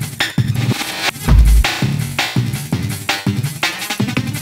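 Jungle/hardcore track played back from an Amiga 1200 in the OctaMED tracker: fast chopped breakbeat drums in gritty 8-bit samples from the Amiga's four-channel Paula sound chip. A deep sub-bass note sounds briefly a little over a second in.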